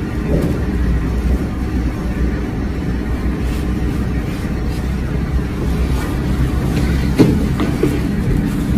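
A steady low rumble, like a machine hum, that holds level throughout.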